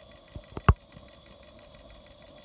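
MSM Clyde twin-cylinder oscillating steam engine running quietly and steadily on about 20 psi of steam. A few sharp clicks come about half a second in, the third the loudest.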